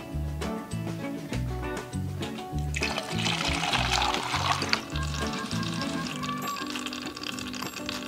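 Background music with a repeating bass line; about three seconds in, water is poured from a plastic bottle into the top of a cut plastic-bottle water clock, splashing for about two seconds.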